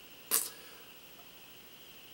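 A single short, sharp intake of breath about a third of a second in, against quiet room tone.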